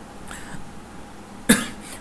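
A person coughs once, a short sharp cough about one and a half seconds in.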